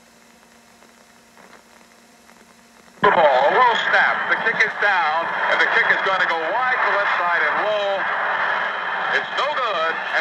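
Faint steady hum of an old radio broadcast recording, then about three seconds in a sudden jump to loud, overlapping voices that continue.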